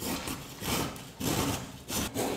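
A raw carrot being grated on a flat metal hand grater, with rasping strokes about twice a second.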